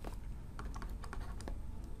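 Faint, irregular light clicks and taps of a stylus on a pen tablet as handwriting is drawn on screen.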